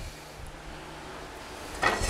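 Faint steady hiss from the gas stovetop, where oil is heating in a frying pan over the burner.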